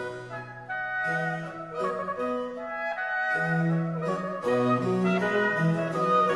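Baroque chamber music for chalumeau, oboe, bassoon and basso continuo: the wind instruments play held, overlapping notes over a bass line that moves from note to note.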